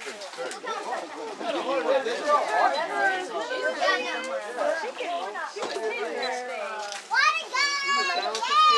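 A crowd of children chattering and shouting over one another, with shrill, high shouts near the end.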